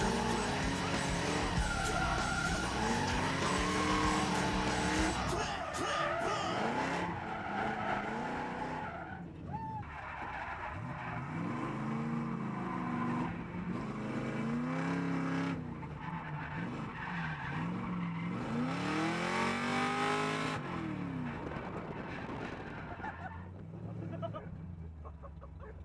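V8 engine of a V8-swapped Mazda RX-7 FD revving up and down again and again through a drift, with tyre squeal, heard from inside the cabin; it grows quieter near the end.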